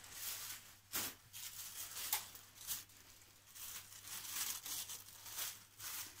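Tissue-paper sewing-pattern pieces and the fabric under them rustling and crinkling as they are picked up and smoothed flat on a table. The sounds are faint and come in short, irregular bursts.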